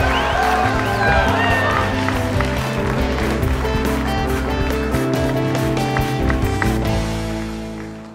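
Background music with a steady beat and bass line, fading out near the end.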